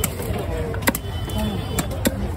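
Heavy fish-cutting knife chopping through a large fish on a wooden log block: two sharp strikes, about a second apart, over a steady low rumble and background voices.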